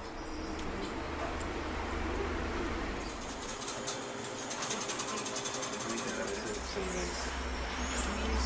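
Wire whisk ticking rapidly against a glass measuring jug as milk is whisked, over a low hum.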